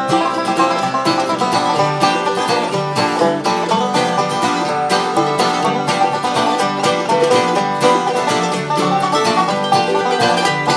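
Bluegrass band playing an instrumental break with no singing: a five-string resonator banjo's fast picked notes on top of strummed acoustic guitar and mandolin, at a steady, lively tempo.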